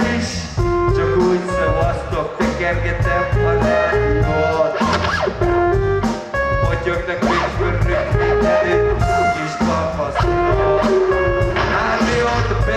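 Loud live band music through a concert PA: a heavy bass and drum beat under a melodic guitar line of held, repeating notes.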